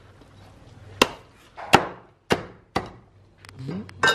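Heavy cleaver chopping through the crisp skin and meat of a whole roast pig, four sharp strokes starting about a second in, roughly half a second apart.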